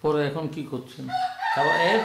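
A rooster crowing: one long call that starts about a second in, rises in pitch and then holds high, over a man's speech.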